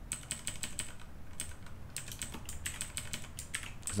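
Typing on a computer keyboard: a quick run of key clicks, a pause of about a second, then a longer, denser run of keystrokes.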